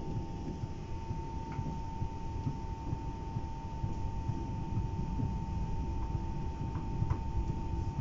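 TER regional train running, heard from inside the passenger cabin: a steady low rumble with a constant high hum and a few light clicks.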